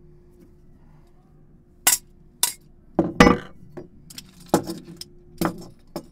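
Foley props handled to make slapstick sound effects: about eight sharp hits and clinks, starting about two seconds in, with the loudest, densest cluster a little past the middle, over a faint steady hum.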